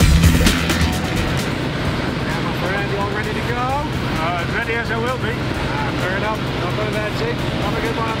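Music with a beat at first. After about a second and a half it gives way to the steady drone of a small jump plane's engine heard inside the cabin, with voices over it.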